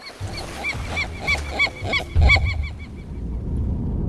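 Seagulls calling: a rapid run of short, squawking calls, several a second, that thins out and fades near the end, over a steady low rumble.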